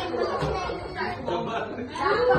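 Indistinct chatter of several people talking at once in a large room.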